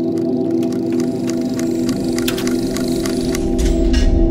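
Logo intro sound design: a held, bell-like drone with clock-like ticking over it, swelling into a deep boom near the end as the ticking stops.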